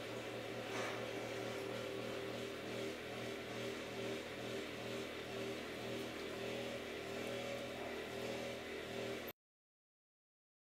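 A steady, low machine hum runs with no change, then cuts off suddenly near the end.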